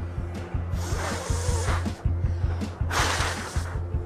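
A person blowing across the top of a sheet of paper in two long puffs, the second louder, over background music with a steady beat.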